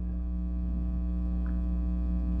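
Steady electrical mains hum: a low, unchanging buzz with a few fainter steady overtones above it.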